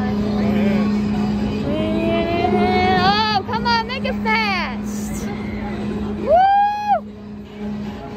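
Riders on a swinging pirate-ship fairground ride screaming over a steady low hum. Several wavering screams overlap from about three to four and a half seconds in, then one long scream rises and falls about six seconds in.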